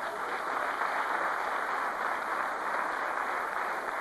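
Theatre audience applauding steadily, with some laughter.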